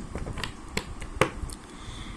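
Tarot cards being shuffled by hand: a few sharp, separate clicks as the cards slap against each other, the loudest a little past a second in.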